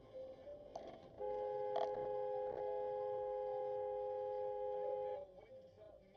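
A car horn sounded in one steady blast of about four seconds, its two pitches held level, starting about a second in.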